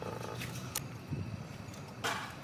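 A gear puller being screwed down with a bar on a grader transmission gear, giving a couple of short metal clicks over a steady low hum.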